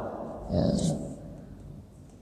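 A man briefly says "ya" about half a second in, over a low steady hum in a small room.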